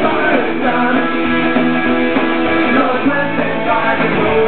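Pop-punk band playing live at full volume: electric guitars, bass guitar and drum kit in a steady, continuous song.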